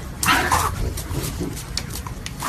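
A puppy vocalizing: one short cry about a quarter second in, followed by a few fainter, smaller sounds.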